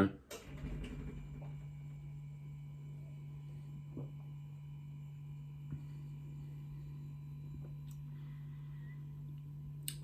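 Quiet room with a steady low hum. A soft sip and swallow from a glass of beer comes in the first second, and a few faint clicks are heard later.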